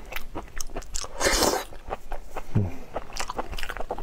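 Close-up eating sounds of raw prawn meat being chewed, with many wet clicks and crackles from mouth and prawn shell, and a louder, hissy wet burst about a second in lasting half a second.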